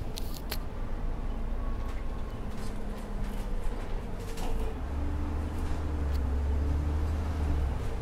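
Double-decker bus engine running with a steady low rumble, with a few knocks from the body near the start; about five seconds in the engine's low drone grows much stronger and steadier.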